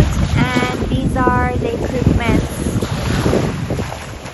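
Wind buffeting the microphone at the waterside, a steady low rumble that eases off near the end.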